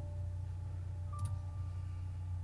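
Two quick computer mouse clicks a little over a second in, over a steady low hum and faint held notes of background music.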